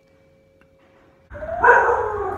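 Near-silent room tone, then about a second and a half in a sudden loud cry-like sound starts, its pitch gliding upward.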